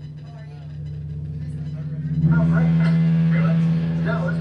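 Steady low electrical hum from switched-on stage amplification, with voices talking in the background. About two seconds in, the hum and the overall sound get much louder.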